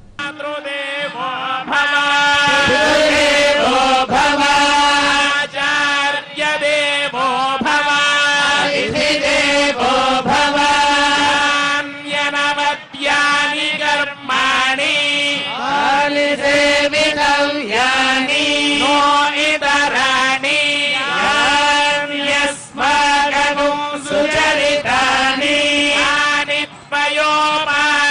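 Male priests' voices chanting Sanskrit mantras in rhythmic, sustained phrases, as recited during a Hindu temple kalyanam (wedding) ritual, over a steady held tone.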